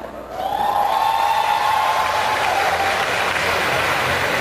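Audience applauding, starting about a third of a second in and holding steady, with one long held high cheer from the crowd over the first three seconds.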